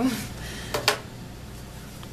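A woman's short breathy laugh right after speaking, with two quick sharp clicks close together a little under a second in.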